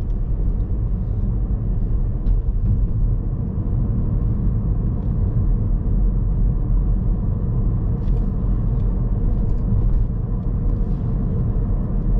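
Steady low rumble of a car's engine and tyres heard from inside the cabin while driving along a wet road.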